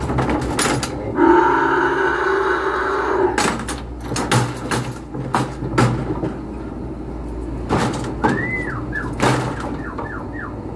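A calf bawls for about two seconds in a wooden-and-steel cattle squeeze chute, then the chute's gates and latches knock and clank several times as it is let out. Short rising-and-falling calls follow near the end.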